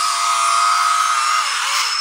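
Electric drive motors and gearboxes of a LESU LT5 RC tracked skid steer whining as it drives across concrete. The whine holds a steady pitch, then dips and wavers about one and a half seconds in.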